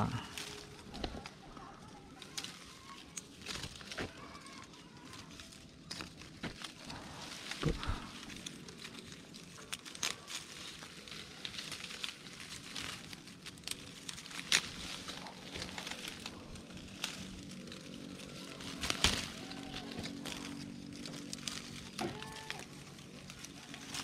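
Leaves and twigs of a clove tree rustling and crackling close by as a hand pulls at its branches, with scattered sharp snaps, the loudest about eight, fourteen and nineteen seconds in.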